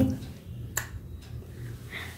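A single sharp click about three-quarters of a second in, over a faint low hum.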